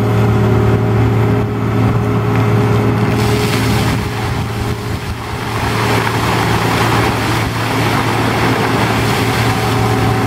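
Track loader's diesel engine running steadily. About three seconds in, a bucketful of water starts pouring down from the raised bucket and splashing onto a person and the ground, loudest in the middle and easing off toward the end.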